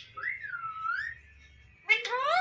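Alexandrine parakeet whistling: one clear whistle of about a second that rises, dips and rises again in pitch, then a louder call sweeping upward begins just before the end.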